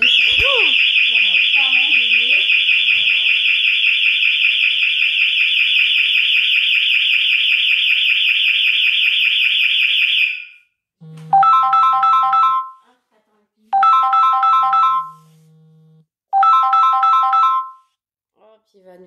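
House burglar alarm siren sounding: a loud, high, rapidly warbling tone for about ten seconds, set off, it seems, by someone coming in while the alarm was armed. It then stops, and a short three-note electronic tone pattern repeats three times.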